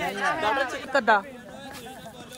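Voices of several people talking and chattering, louder for about the first second and then fainter.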